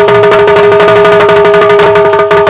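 Bundeli rai folk music played loud: rapid, dense hand-drum strokes over two steady held notes.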